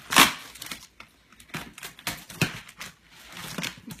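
Cardboard box being pulled and torn open by hand, with one loud burst about a quarter second in and several shorter tears and crinkles after it.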